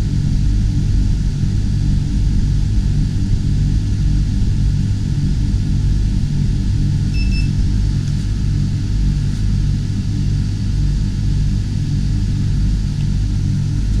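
Marine air conditioners running, both compressors and blowers on: a loud, steady low hum. A single short electronic beep comes about seven seconds in.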